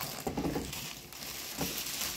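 Plastic bubble wrap rustling and crackling as a small wrapped item is handled in the hands.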